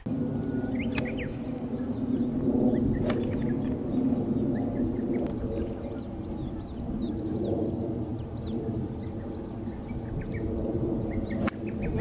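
A fairway wood striking a golf ball: one sharp click near the end. Under it runs a steady low rumble, with birds chirping.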